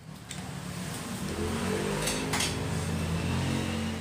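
A motor vehicle's engine driving past on an adjoining road, a low steady hum that swells over the first second or two and then holds. Cutlery clinks once on a plastic plate about two seconds in.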